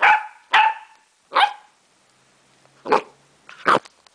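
Small dog barking: five short barks, three close together in the first second and a half, then a pause of over a second and two more near the end.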